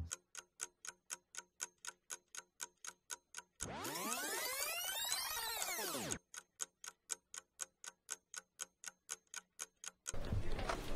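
Ticking-clock sound effect, about four quick, even ticks a second. From roughly four to six seconds in, the ticking gives way to a whooshing sweep of many tones that rise and then fall, and then the ticking resumes.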